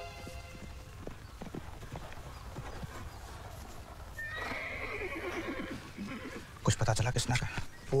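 A horse whinnies about four seconds in, a high call falling in pitch. Near the end come a run of loud hoof clops.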